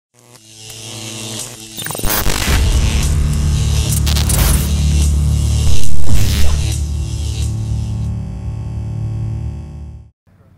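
Intro logo sting: distorted, effects-laden music that swells in, hits hard at about two seconds, peaks loudest around six seconds, then fades away.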